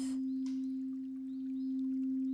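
Frosted crystal singing bowl sounding one steady, sustained tone as a wand is circled around its rim.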